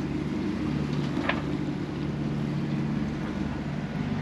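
Steady low drone on board a sailing catamaran under way, with wind and water noise over it.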